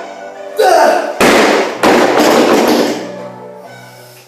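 Music plays over a short yell, then a loud crash about a second in and a second one just after, as a loaded barbell with bumper plates is dropped from overhead onto the floor and bounces.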